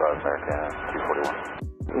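Air traffic control radio voice on a narrow-band channel: a pilot reading back a runway-crossing clearance and ground frequency, with a short break near the end. Background music plays underneath.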